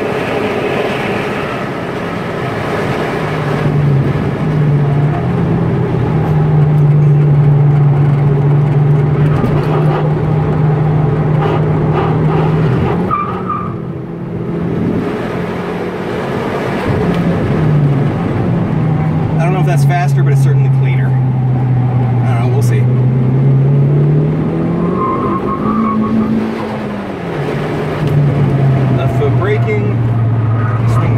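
Turbocharged 2002 Hyundai Tiburon's 2.0-litre four-cylinder engine working hard on a track lap, heard from inside the cabin. Its pitch holds high, drops and climbs again with the revs, dipping around the middle and rising to a peak before falling near the end.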